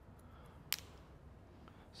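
Hairdressing scissors closing once in a single sharp snip through a section of hair about a third of the way in, with a few fainter clicks of the blades around it, over quiet room tone.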